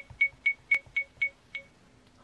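Acumen XR10 mirror dash cam beeping through its small speaker each time its touchscreen is tapped: about eight short, high beeps, roughly four a second, one with a louder click near the middle.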